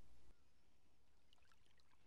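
Near silence: faint lapping of calm sea water at a stony shore, with a few tiny trickling ticks about halfway through.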